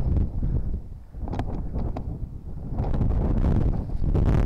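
Wind buffeting the microphone: a loud, gusty low rumble that dips briefly about a second in.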